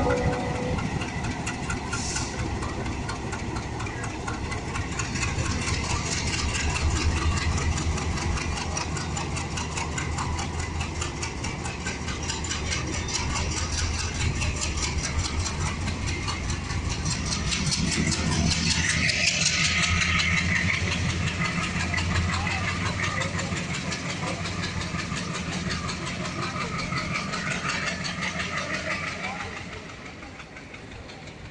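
Diesel locomotive's engine running with a steady low hum as it draws a passenger train out of the platform. The train rolls past with an even, repeating clatter of wheels, first a dead electric locomotive hauled behind the diesel, then the coaches.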